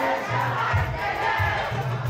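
A live band playing loud dance music with a heavy, repeating bass line, and a crowd shouting over it.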